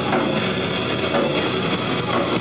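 Hardcore metal band playing live: pounding drum kit and guitars in a dense, loud, unbroken wall of sound.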